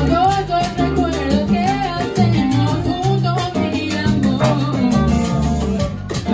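Live salsa band playing, with a steady bass line and percussion under a wavering melody line.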